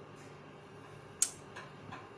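Tarot cards handled in the hands: one sharp click a little past halfway, then two softer ticks, over a low steady room hum.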